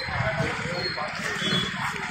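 Speech: voices talking, with no other distinct sound standing out.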